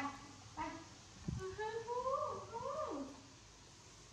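A baby macaque gives one long wavering cry that rises and falls in pitch for about a second and a half, just after a soft thump.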